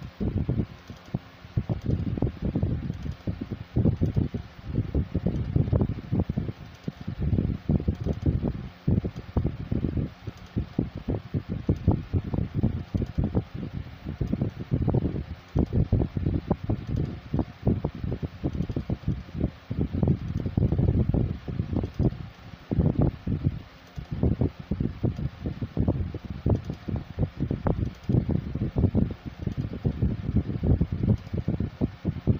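Air from a fan buffeting the phone's microphone, an uneven low rumble that swells and drops in quick gusts.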